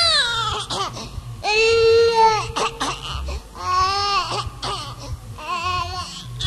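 A baby crying in four long wails, the first falling in pitch, over a low bass pattern.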